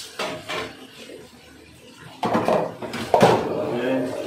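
Glass pot lid being handled and set onto a stainless-steel steamer pot, clinking against the metal several times, loudest about two to three seconds in.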